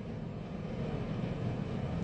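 Steady low background rumble of room noise, with no other distinct sound.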